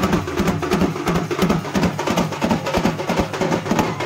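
Folk drums for a Danda Nacha procession, including a large frame drum, played in a fast, steady beat of low drum strokes with sharp, clicking strikes between them.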